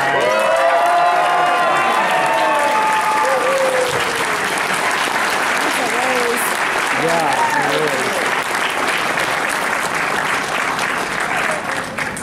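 Audience clapping and cheering, starting suddenly and holding steady, with shouts and whoops over the clapping in the first few seconds and again about six to eight seconds in; it eases slightly near the end.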